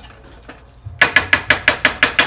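Wooden spatula knocking against the side of a nonstick wok, a quick run of sharp taps about six a second starting about a second in.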